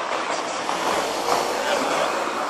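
Steady outdoor street background noise, an even hiss with faint voices in it.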